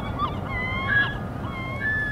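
A flock of geese honking, many short calls overlapping, with one louder call about halfway through, over a low steady rumble.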